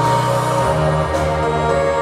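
Live band playing on stage: held chords over a bass line that changes about half a second in, with a faint crash about a second later.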